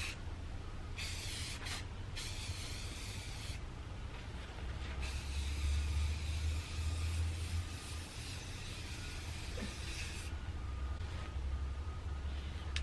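Aerosol spray-paint can hissing in bursts: a short spray about a second in, another of about a second and a half soon after, then a long spray of about five seconds, with a steady low rumble underneath.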